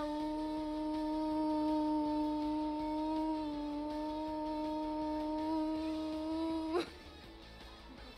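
A girl imitating a cat, holding one long 'miau' on a steady pitch for about seven seconds, then cutting off with a brief upward flick.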